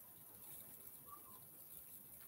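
Near silence: faint room tone with a steady hiss.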